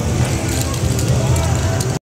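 Mixed voices over a steady low outdoor rumble, with scattered faint clicks.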